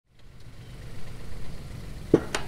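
Rural King RK37 compact tractor's diesel engine running steadily at a low, even throb, fading in from silence at the very start.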